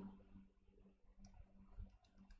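Near silence with a few faint clicks from a stylus tapping on a tablet screen while handwriting numbers.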